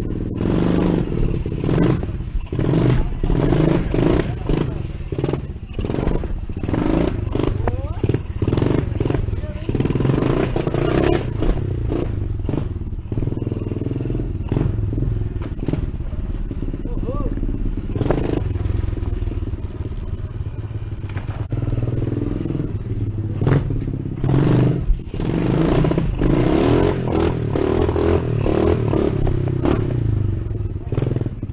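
ProTork TR100F mini motorcycle engine running close up, revving up and down repeatedly as it is ridden.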